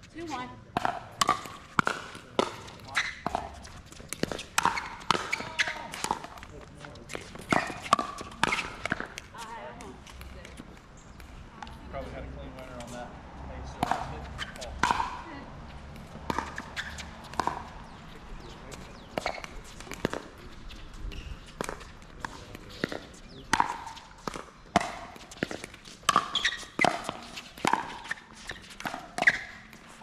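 Pickleball paddles striking a hard plastic ball: a string of sharp pops through the rallies, with a quieter gap partway through, mixed with players' voices.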